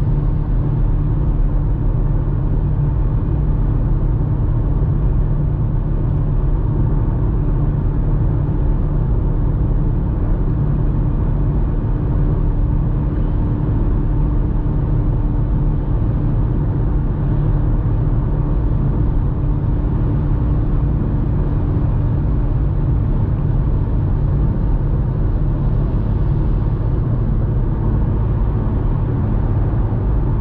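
BMW M5 Competition (F90) cruising steadily at highway speed: a continuous low rumble of its twin-turbo V8 and the road noise, heard from inside the cabin. A faint steady hum under the rumble drops away a little past twenty seconds in.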